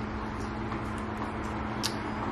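Steady low hum and background noise of a home kitchen, with one brief faint click near the end.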